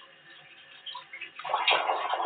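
Water splashing at a sink as hands wash, starting suddenly about one and a half seconds in after a quiet start.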